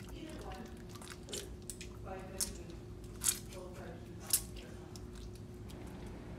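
Soapy hands rubbing and scrubbing together, faint wet squishing with three sharper squelches in the middle, over a faint steady hum.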